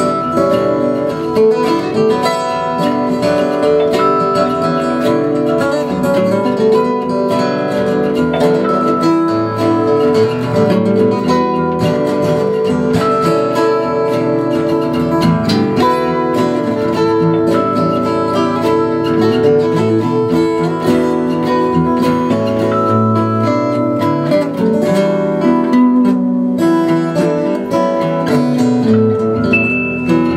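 Three acoustic guitars strummed and picked together in a live song.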